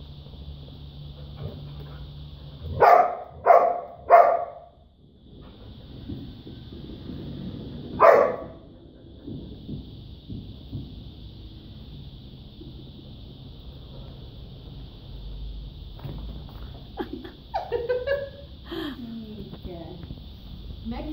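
A small dog barking at a ball held out to her in play: three barks in quick succession, then one more a few seconds later.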